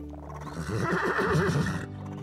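A horse whinnying: one wavering call of about a second and a half, starting a few tenths of a second in.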